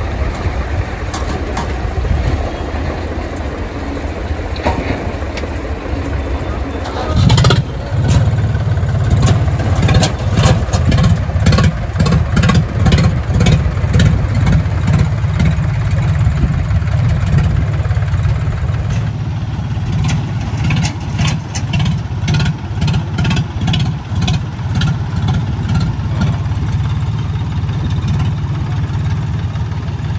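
Diesel tractor engines running; about seven seconds in the engine note jumps and the engines labour under load with a fast, steady throb as the stuck tractor is towed back onto the road.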